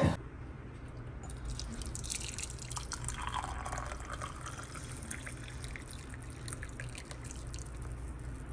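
Hot water poured in a thin stream into a ceramic mug holding a tea bag, trickling and splashing. The pour sounds fullest about three to four seconds in.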